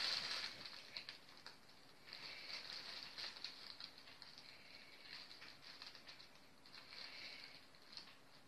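Faint rustling of a fabric cat play tunnel as a cat moves about inside it, in short spells with small ticks.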